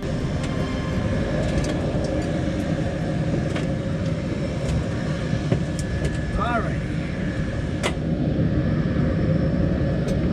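Wind buffeting a camera microphone in open air, a steady rumble, with a faint steady hum behind it and a few light knocks as someone climbs up the aircraft into the open cockpit.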